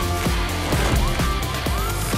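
Upbeat TV-show theme jingle playing over the title animation, with repeated sweeping pitch glides over a steady bass.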